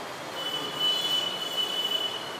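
A steady, high-pitched whistling tone that starts about half a second in and holds for about two seconds, over faint background noise.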